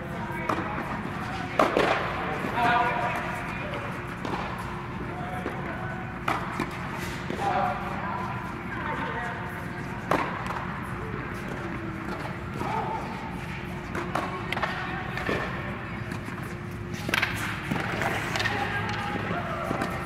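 Tennis rackets striking balls on serves: single sharp pops every few seconds, over a steady low hum and distant voices in a large echoing indoor court.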